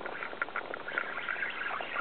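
Fishing reel ticking in short, irregular clicks as a big redfish is played on the line.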